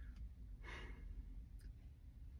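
A man's soft breath out, faint, a little past halfway in, over a low steady background rumble; a faint click near the end.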